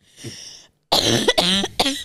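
A woman laughing hard: a breathy in-breath near the start, a short pause, then a run of loud laughs broken by coughing.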